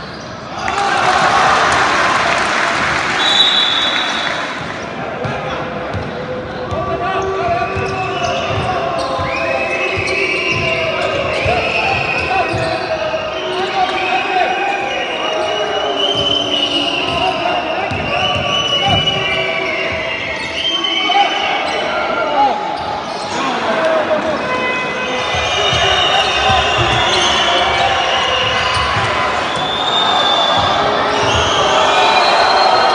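Indoor basketball game in a large echoing hall: a burst of crowd cheering and applause about a second in, then players and spectators shouting over the repeated thuds of the ball being dribbled on the hardwood court.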